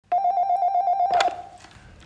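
A telephone ringing: one rapidly pulsing tone that stops with a click about a second in.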